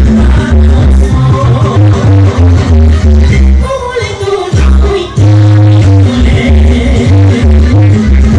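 A woman sings a Romanian folk song live over loud amplified accompaniment with a steady, heavy bass beat. Midway through, the beat drops out for about a second and a half, leaving a line that slides down in pitch, and then the beat comes back in.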